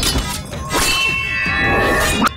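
Metal weapons clashing in a fight: sharp hits near the start and again about three-quarters of a second in, followed by a ringing clang that hangs on.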